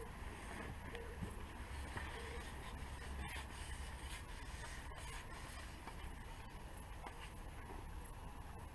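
Faint steady low rumble and light hiss of open-air ambience, with a few faint ticks.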